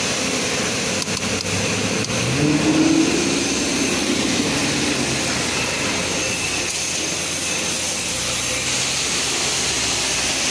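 Steady rushing noise of self-serve car wash bay equipment running, with a brief rising mechanical tone and a swell in loudness about two and a half seconds in.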